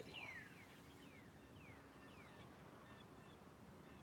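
Near silence with faint songbird calls: several thin, downward-sliding whistles in the first three seconds.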